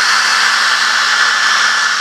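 Handheld hair dryer running steadily, a constant blowing rush with a faint even hum, its airstream played across a freshly poured epoxy-and-filler mix in a mould.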